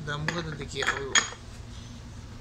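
Clinks and knocks of a metal tribrach adapter being seated onto a surveying tribrach in a foam-lined case. There are several short contacts with a brief metallic ring, and the sharpest comes just over a second in.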